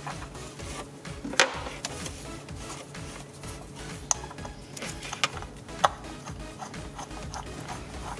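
Hand tool with a Torx T40 bit unscrewing the bolts of a water pump pulley: a few sharp metallic clicks over a faint, steady background of music.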